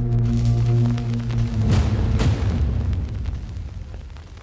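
Cinematic logo-intro music: a held low chord, then two deep boom hits about half a second apart a little under two seconds in, ringing out and fading away.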